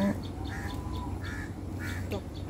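A bird calling outdoors: four short calls spread over two seconds.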